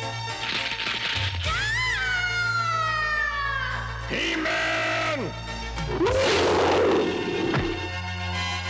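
Cartoon background score with sound effects laid over it: a long pitched cry that rises briefly and then falls, starting about a second and a half in, a shorter pitched sound around the middle, and a loud, noisy roar-like burst near the end.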